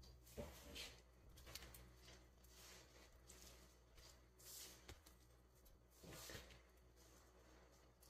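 Near silence, with a few faint soft squishes and rustles at irregular moments as a hand works sticky bread dough into loose flour on a countertop.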